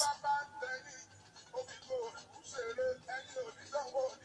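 Faint background music with a singing voice: short melodic phrases that come and go.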